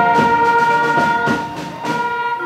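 School orchestra holding a long, loud brass-led chord, with a few percussion strokes across it. The chord ends about a second and a half in, and new notes begin near the end.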